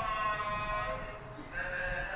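A man's voice chanting in long, drawn-out notes, in two held phrases with a short break near the middle, typical of Islamic prayer recitation at a mosque.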